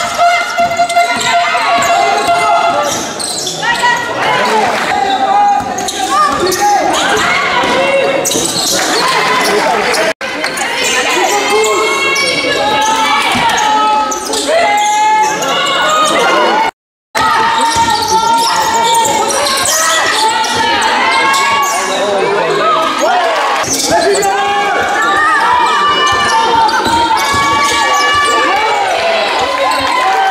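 Live indoor basketball: a ball bouncing on the court amid players' and spectators' voices, echoing in a sports hall. The sound drops out briefly twice at edit cuts.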